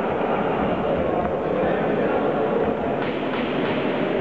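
Steady babble of crowd voices in a large sports hall, with a few faint knocks near the end.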